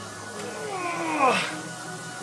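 A man's drawn-out effort groan, an 'ah' that slides steeply down in pitch, strained out during a barbell curl rep, over steady background music.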